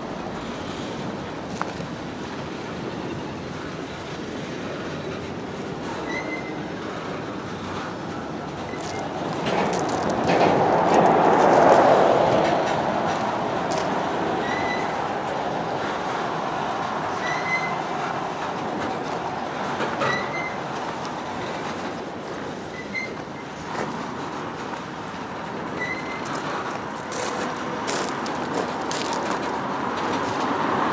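Loaded freight cars rolling past at a crawl as the train slows to a stop: a steady rumble and clatter of wheels on rail, louder for a few seconds about a third of the way through, with short high squeals every couple of seconds.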